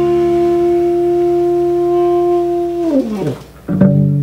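Live jazz: a tenor saxophone holds one long loud note over a sustained low upright-bass note, then the sax note slides down and drops away about three seconds in. Near the end the band strikes a final short accent with a drum hit, closing the tune.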